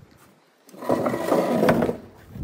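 Bistro chair dragged across brick paving, its legs scraping roughly; the scrape starts about two-thirds of a second in and runs for over a second.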